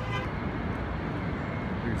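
Steady downtown street traffic noise, a low even rumble of passing cars.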